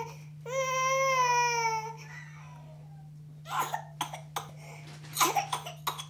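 Infant with whooping cough giving a long, high-pitched cry, then from about halfway through a run of short coughs in quick succession: the coughing fit typical of pertussis in babies.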